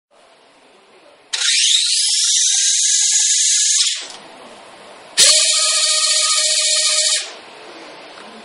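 Small electric motors of a Cubo Lv 3 robot-kit pitching machine spinning its two launch wheels: a loud high whine that rises in pitch as they spin up. It runs for about two and a half seconds, stops, then runs again for about two seconds.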